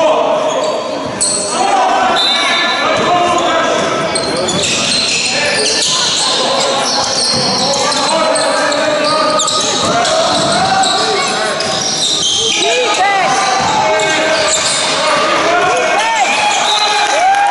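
Basketball being dribbled on a wooden sports-hall floor during a game, with players and spectators calling out and the hall echoing.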